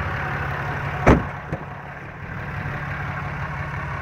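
A 6.7-litre Cummins diesel idling with a steady low hum. A single sharp clunk comes about a second in, with a fainter knock half a second later.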